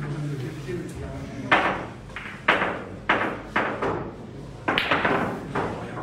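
Billiard balls bowled by hand in boccette, knocking against each other and the table's cushions: about six sharp clacks, each with a short ringing tail, spread over the middle four seconds.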